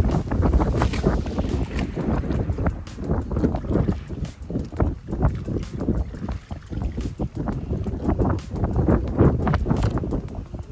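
Strong wind buffeting the microphone, a loud low rumble full of irregular gusts, over choppy water lapping around a person wading waist-deep.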